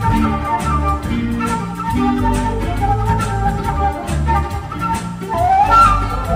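Live instrumental band music: a flute melody over bass guitar and a drum-machine beat, with a bending, gliding lead note near the end.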